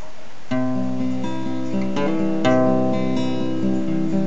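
Acoustic guitar strumming slow chords, starting about half a second in, each chord ringing on into the next.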